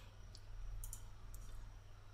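Faint computer mouse clicks, a few short ticks about half a second apart, as menu items are selected, over a low steady hum.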